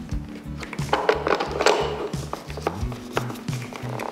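Background music with a steady beat. Over it, a few brief scrapes and clicks of the metal filter holder being pushed up and twisted into place on the espresso maker.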